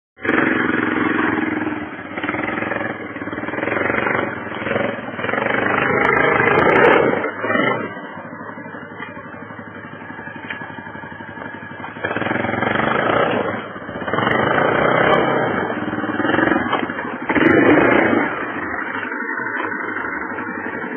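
Yamaha 250 quad bike engine revved hard under load in two long surges, pushing into blackberry brambles, with a lower, steadier running stretch between them about eight to twelve seconds in.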